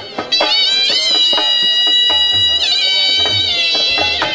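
Live folk music: a high melody line is held for a couple of seconds and bends in pitch, over a steady harmonium drone and repeated dhol strikes.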